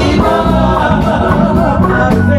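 Live band music with a woman singing lead and backing vocalists, over a steady bass line and beat.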